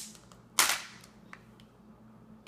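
Plastic Kinder Joy egg being pulled open by hand: a short click at the start, then a loud sharp snap about half a second in as the two halves come apart.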